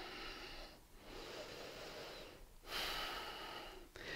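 A woman's slow, audible breathing, about three long breaths each around a second and a half, with short pauses between them.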